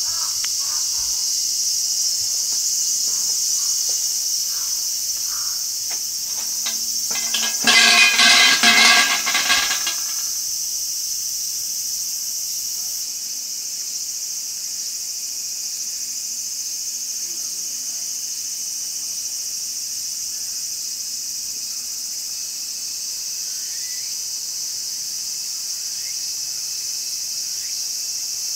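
Insects calling in a steady, high, even drone. About eight seconds in, a shrine's suzu bell is shaken by its rope and jangles for about two and a half seconds.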